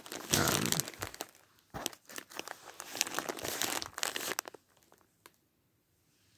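Crinkling, clicking handling noise close to the microphone, as of plastic (a disc case or its wrapping) being handled. It runs densely for about four and a half seconds, then thins to a few scattered clicks.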